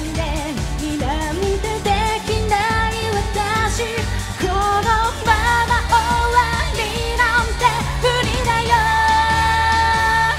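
A female pop singer singing a Japanese idol song live into a handheld microphone over a backing track with bass and drums. Her melody moves up and down, then she holds one long note near the end.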